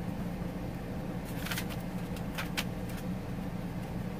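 Paper pages of a handmade journal being handled and turned: a few short, crisp rustles starting a little over a second in, over a steady low hum.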